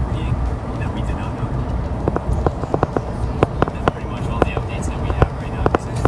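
Steady low rumble of road noise inside a moving van at highway speed, with a run of short, quick clicks or taps starting about two seconds in.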